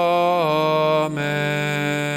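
A man chanting a drawn-out sung "Amen" on held notes with slight vibrato, over a steady held instrumental accompaniment. The notes change about half a second in and again about a second in.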